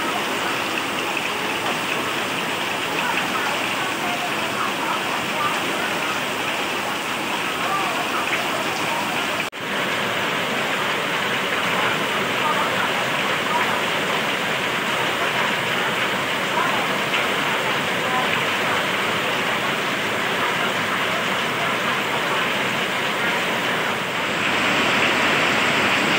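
Heavy monsoon rain pouring down steadily, an even hiss of water falling on lawn and hard surfaces. There is a momentary break about ten seconds in, and the rain grows louder in the last couple of seconds.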